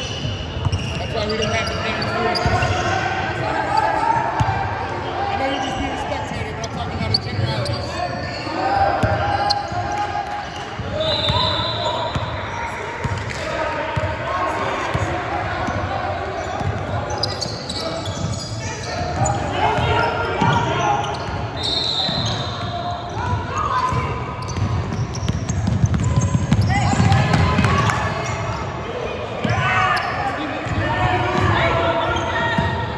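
Basketball game sounds in a large, echoing gym: a ball bouncing on the hardwood court while players and spectators call out.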